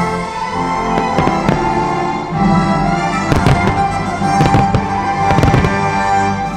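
Aerial fireworks shells bursting in quick clusters of bangs over loud show music. The bangs thin out near the end.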